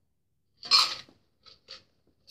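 Ice in a stainless-steel Boston shaker tin: one brief rattle a little after half a second in, then two short clinks as the tin is handled while its meltwater is drained.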